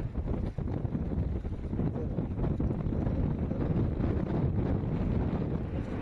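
Wind buffeting the microphone over open water, a heavy, fluctuating low rumble.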